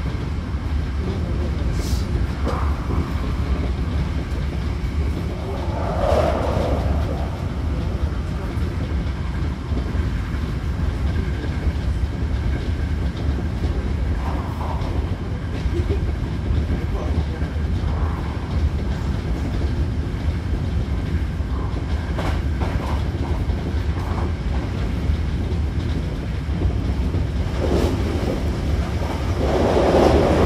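Hankyu Kobe Line train running, heard from inside the passenger car: a steady low rumble of wheels and running gear, with a few faint clicks and a louder swell near the end.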